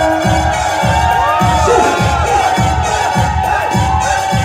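Live Assyrian dance music for the Sheikhani line dance: a keyboard melody over a steady drum beat of about two beats a second. A crowd cheers and shouts over it.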